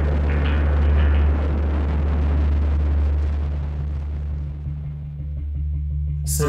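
Low, steady drone in the music track, with a noisy wash over it that gradually thins out, its high end fading away over the last two seconds.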